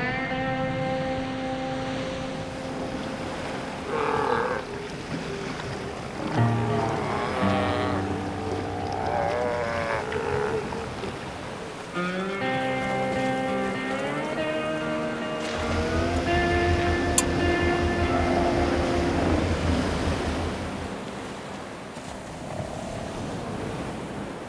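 Sea lions on a crowded haul-out calling in several long, low drawn-out calls, over surf and background music.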